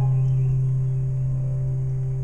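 A sustained low tone with fainter overtones above it, held steady and slowly fading: the band's instruments ringing on a last low note.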